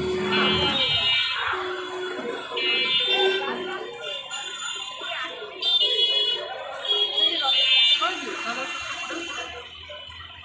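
A high electronic buzzer beeping in short bursts, several times over, with people talking around it.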